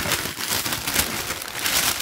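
Tissue paper crinkling as hands handle a tissue-wrapped trainer: a dense, continuous run of fine crackles.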